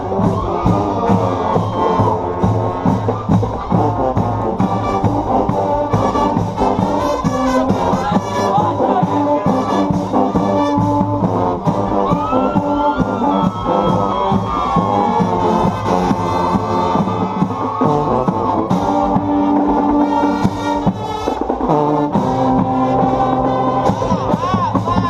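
Marching band playing while on parade: brass with sousaphones carrying a tune over a steady beat.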